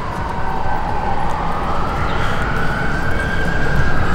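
City street traffic noise, with a single whine that rises slowly in pitch across the few seconds and begins to fall near the end.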